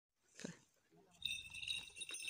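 Faint, high, steady ringing at several pitches from a falconry bell on a flying goshawk, starting about a second in. A short soft sound comes just before half a second in.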